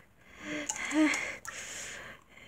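A person's breathy voice, close to a whisper, with a faint click a little past the middle.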